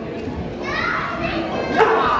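Children in the crowd shouting and cheering in high voices, with a single thud near the end.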